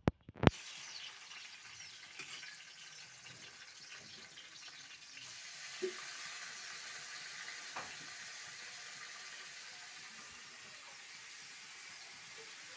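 Chopped ingredients sizzling steadily in hot oil in a wok as they are stirred with a metal ladle. It starts with a sharp clatter about half a second in, and the ladle knocks against the wok a couple of times.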